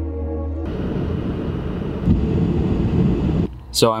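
Ambient background music stops under a second in, giving way to steady road and tyre noise inside a moving car's cabin on a wet road, which cuts off shortly before a man starts talking.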